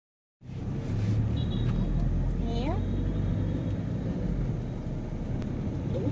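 Steady low rumble of street traffic, with vehicle engines running, plus a few brief higher sounds about one and a half to three seconds in.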